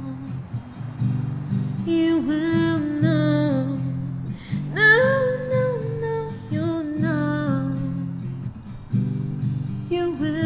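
A woman singing solo over her own steady acoustic guitar accompaniment. Her phrases come with short gaps between them, and the loudest one starts on a higher note about five seconds in.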